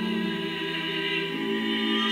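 A small vocal ensemble singing slow, held chords, with the harmony changing twice.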